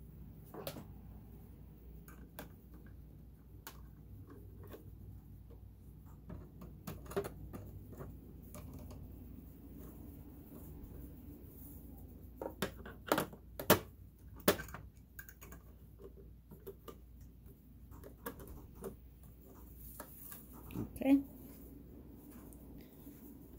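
Scattered small clicks and taps of hands handling sewing-machine parts and screws during reassembly, with a few sharper knocks between about 12 and 15 seconds in.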